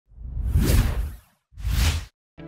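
Two whoosh sound effects of an animated logo intro: a longer swell of rushing noise with a deep low end, then a shorter one starting about a second and a half in that stops abruptly.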